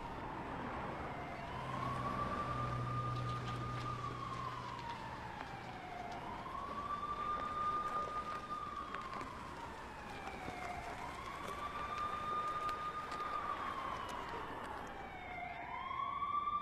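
Police siren wailing, its pitch slowly rising, holding and falling in cycles of about four to five seconds.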